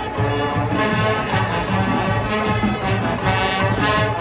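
Marching band playing, led by brass with a heavy low-brass part; the band gets louder just after the start.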